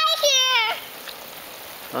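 A young girl's high-pitched voice calls out briefly at the start. Then comes a steady hiss of water spraying from a slip-and-slide's garden hose.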